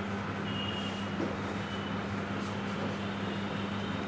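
Steady low hum over background room noise, with a faint soft knock about a second in.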